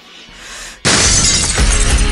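Background music kicking in with a sudden loud crash about halfway through, followed by pitched musical notes.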